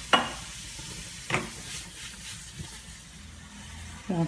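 Shrimp sizzling in a frying pan over a gas burner while being flambéed, the flames dying down. Two sharp knocks on the pan, one at the start and one just over a second in.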